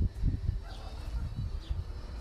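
Faint bird calls over a low, uneven rumbling on the microphone.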